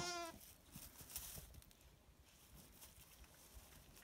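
A single short sheep bleat right at the start, then near silence with faint scattered rustles.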